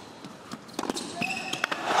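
Tennis ball struck back and forth by rackets in a rally, a few sharp hits, with short squeaks of shoes on the hard court. The crowd begins to roar near the end as the point is won.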